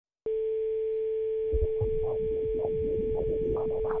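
A steady telephone dial tone, one continuous pitch, opens the song. About a second and a half in, a pulsing rhythmic backing of the music starts under it.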